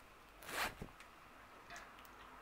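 A brief rustle about half a second in, followed by a faint click, as of hair or clothing brushing close to the microphone; otherwise quiet.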